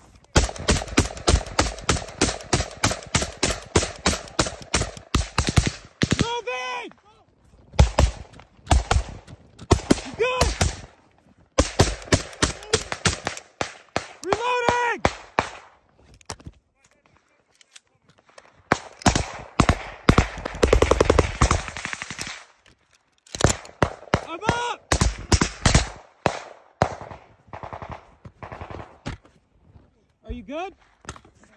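Automatic gunfire, several shots a second in long strings with short pauses between them: covering fire during a fallback.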